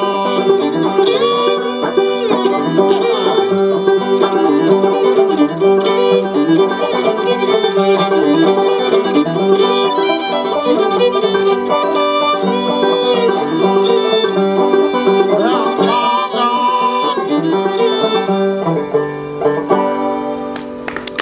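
Fiddle and banjo playing an old-time tune together without singing: the fiddle carries the melody over the banjo's quick picked notes.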